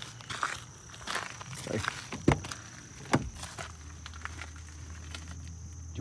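Footsteps crunching on a gravel and dirt track, one step every half second or so, with the sharpest crunch a little over two seconds in.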